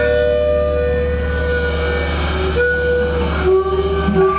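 Live rock band holding long sustained notes: electric guitar tones ringing out together over a steady low bass drone, with few sharp drum hits. The held notes shift twice in the second half.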